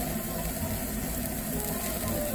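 Tabletop gas yakiniku grill running steadily, with beef sizzling on the grate.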